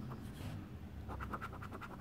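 A coin scraping the coating off a paper scratch-off lottery ticket in quick, short, faint strokes.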